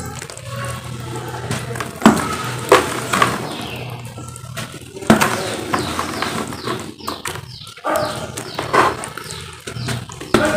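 Lumps of pure cement crushed by hand in a plastic basin of water: a gritty, wet crunching and sloshing, broken by several sharp crunches and splashes.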